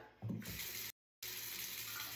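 Water running steadily from a bathroom tap into a sink. It cuts out completely for a moment about a second in, then runs on.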